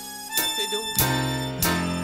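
Live band music from a chanson recital: held notes over a steady beat struck about every two thirds of a second.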